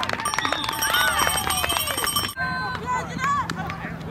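Spectators' voices calling out and cheering over one another, with scattered sharp knocks. A little over two seconds in it cuts abruptly to a quieter stretch with only a few voices and a low steady hum.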